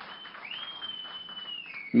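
A pause in a man's speech, with faint background hiss and a thin high whistle that sweeps up about half a second in, then drifts slowly down.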